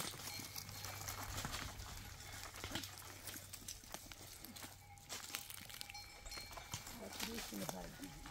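Footsteps and small stones shifting on rocky ground, heard as scattered soft clicks and taps, with faint voices.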